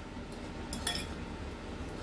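A spoon clinking a few times against a glass mixing bowl while stirring a chopped vegetable and grated cheese filling, the clearest clinks just under a second in.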